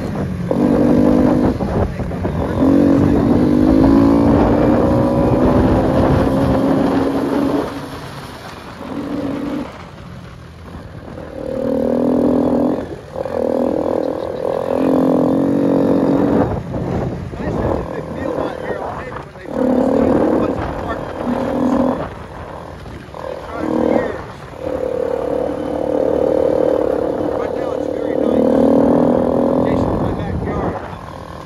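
Four-wheeler (ATV) engine running under the rider, its pitch rising and falling as the throttle is opened and closed. It eases off about ten seconds in, then picks up again in repeated surges, with wind rumbling on the microphone.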